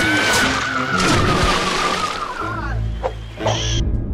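Cartoon action soundtrack: dramatic music with a long, high screech that slowly falls in pitch over a rushing noise, then a low rumble and a short whoosh near the end.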